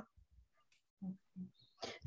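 Near silence on a video-call audio line, broken a little past a second in by two short, faint voice sounds, with speech starting again at the very end.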